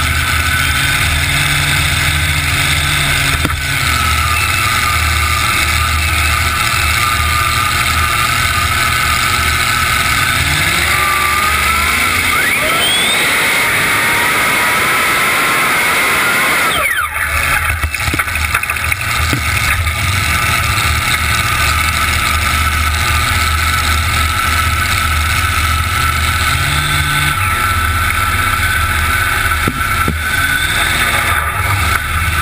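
Engines of a three-engine supercharged modified pulling tractor, very loud and close, idling steadily. About ten seconds in they rev up with a rising pitch for several seconds under full throttle on the pull, then drop back suddenly to a steady idle.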